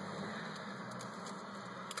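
Faint steady background hiss and low hum inside a car cabin, with one small click near the end.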